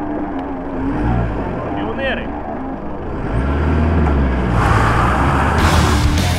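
Ford Ranger pickup's diesel engine running and pulling away through snow, its low rumble growing louder about three and a half seconds in.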